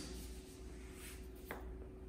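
Quiet room tone in a pause between speech: a steady low hum with a faint steady tone above it, and one short click about one and a half seconds in.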